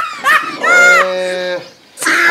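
A cow mooing once: a single drawn-out call about a second long that rises, holds and falls away.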